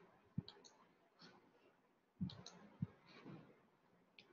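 A few faint clicks and soft knocks: the sharpest about half a second in, two more between two and three seconds in, with fainter clicks between.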